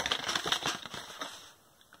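Folded paper cassette inlay being opened out by hand: a quick run of crackles and rustles that dies away about a second and a half in.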